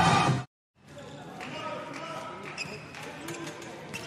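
Handball court sound in a large, nearly empty hall: a handball bouncing on the floor and players calling out. A louder stretch cuts off abruptly about half a second in, then after a brief silence the quieter court sound resumes.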